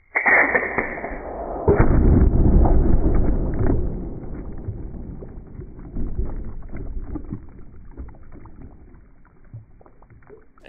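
Slowed-down, pitched-down sound of a 9mm AEA Terminator air rifle pellet hitting full plastic water jugs. There is a sudden hit at the start and a heavier, louder impact about two seconds in, followed by crackling, spraying water that fades slowly. The impact is called much louder than the earlier pellet's, with this round hitting quite a bit harder.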